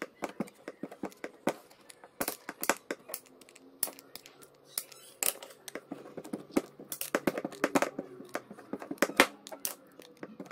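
Aviation tin snips cutting a thin PVC plastic sheet along a curve: a quick, irregular series of sharp snips and clicks as the blades bite and close.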